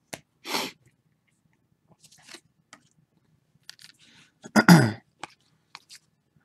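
A man sneezing: a short, sharp noisy burst about half a second in, then a louder sneeze with a voiced part that falls in pitch near the end. Faint clicks of trading cards being handled come in between.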